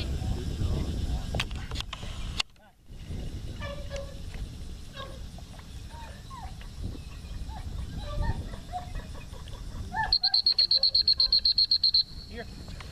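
Small birds chirping over an open field with a low rumble at the start. In the last two seconds a loud, high-pitched signal pulses rapidly, about nine pulses a second, as a dog-training recall signal.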